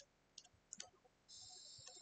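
Near silence with a few faint clicks and light scratching: a stylus tapping and sliding on a tablet screen during handwriting.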